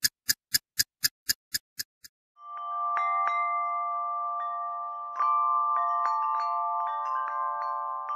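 Added soundtrack effects: a quick run of short, even ticks, about four a second, that stops about two seconds in. Then a sustained shimmering chime chord swells in, with struck bell-like notes ringing over it and a second swell about halfway through.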